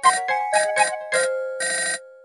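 Phone ringtone playing a quick electronic melody of short bright notes, cutting off near the end when the call is picked up.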